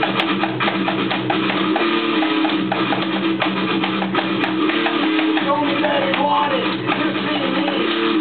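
Amateur rock band playing an instrumental passage: electric guitar chords over a steady beat of about four strikes a second.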